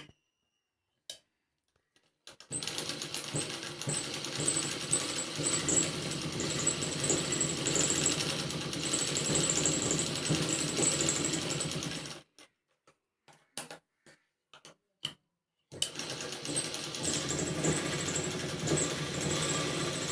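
Sewing machine running steadily as it stitches fabric, in two long runs: from about two and a half seconds in to about twelve seconds, and again from about sixteen seconds on. Between the runs come a few short clicks.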